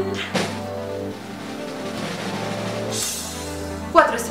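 Instrumental background music with held notes and a bass that changes about every second. A rushing swoosh comes about three seconds in, and a sharp hit lands at the very end.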